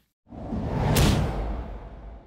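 Whoosh transition sound effect: it swells in about a quarter second in, peaks with a sharp hit around the middle over a low rumble, then fades away.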